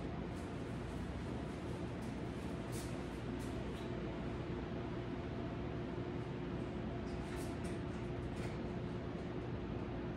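Steady background hum with a faint hiss and one low steady tone, broken only by a few faint light clicks about three seconds in and again around seven to eight seconds in.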